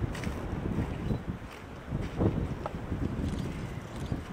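Wind buffeting the microphone: a low rumble that rises and falls in gusts, with a couple of brief, sharper rustles a little past the middle.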